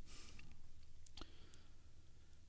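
A few faint computer-mouse clicks, the clearest about a second in, as a web photo gallery is clicked through.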